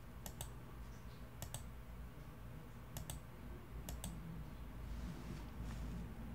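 Faint computer mouse clicks: four pairs of quick clicks about a second apart.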